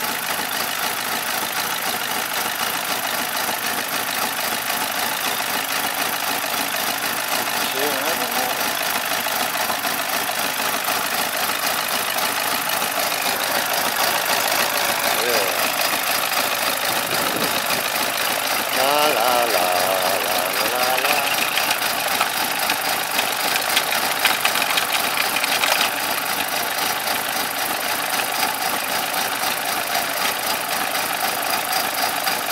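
BMW 318's four-cylinder engine idling steadily with its oil filler cap off while water from a hose pours into the filler, churning the oil into foam.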